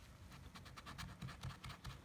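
A metal challenge coin scratching the coating off a scratch-off lottery ticket in quick, short, faint strokes, with a small click as the coin first meets the card.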